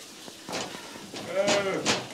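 A drawn-out vocal call with a wavering pitch, about one and a half seconds in, after a quiet first second with a few faint clicks.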